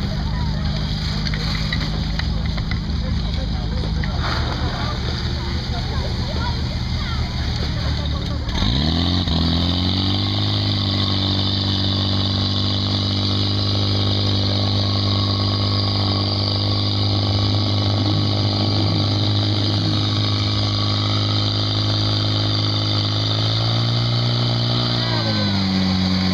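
Portable fire pump's petrol engine running. About eight seconds in it is opened up to high revs and holds there steadily, pumping, then drops back down near the end.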